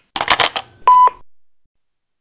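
A quick burst of clicks and noise, then a single short electronic answering-machine beep about a second in, marking the end of a recorded message.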